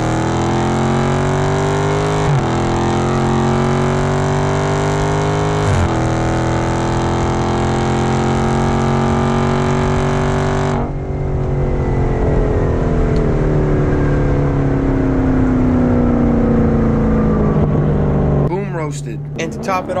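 Dodge Charger's 6.4-litre 392 Hemi V8 pulling hard at full throttle, its note climbing through the revs with two quick upshifts. About halfway it lifts off and the engine note falls slowly as the car coasts down. Near the end it gives way to a voice and music.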